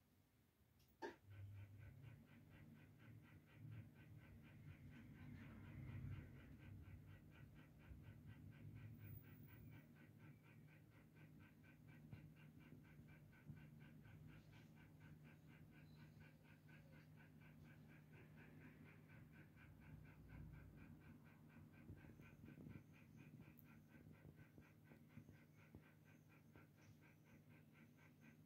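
Near silence: a faint steady low hum with a fast, even pulsing above it, starting just after a single click about a second in.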